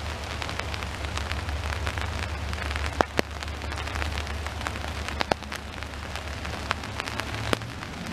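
Rain falling, with many separate drops ticking close by and a few louder drop hits about three, five and seven and a half seconds in, over a steady low rumble.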